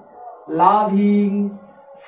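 A man's voice drawing out one long syllable on a steady pitch for about a second, starting about half a second in.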